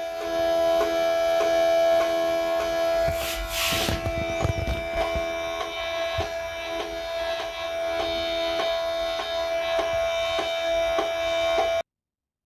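NEMA 14 stepper motor driven by an A4988 in full steps at 100 rpm, giving a steady tone at its step rate of about 330 steps a second, with a strong overtone an octave up. A brief hiss comes about three and a half seconds in, and the tone cuts off suddenly near the end.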